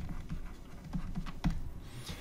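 Stylus tapping and scratching on a tablet surface while handwriting a word: a run of short, light taps and clicks.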